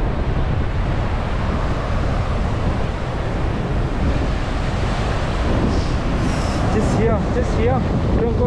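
Steady wind buffeting the microphone over waves breaking and washing up the beach, with a brief voice near the end.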